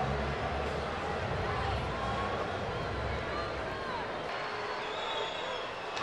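Faint, steady murmur of a ballpark crowd, with no clear speech or distinct impact.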